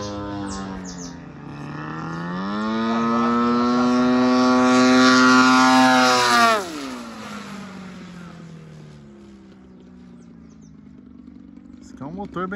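Radio-controlled model airplane's propeller engine on a low fly-by. Its pitch and loudness rise as it opens up and comes in. About six and a half seconds in, the pitch drops sharply as it passes, and the sound fades as the plane climbs away.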